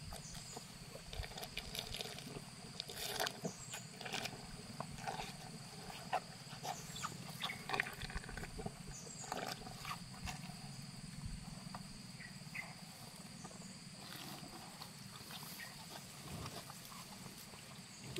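Young cattle eating feed out of a plastic bucket: faint, irregular crunching, snuffling and knocks as their muzzles work in the bucket.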